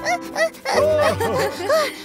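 A cartoon kitten panting hard, out of breath, in short voiced gasps about two or three a second, over children's background music.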